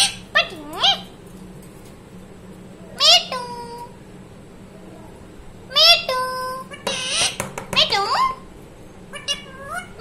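Rose-ringed parakeet (Indian ringneck) giving a series of about five short, high-pitched, voice-like calls, each sliding down and up in pitch, with brief pauses between.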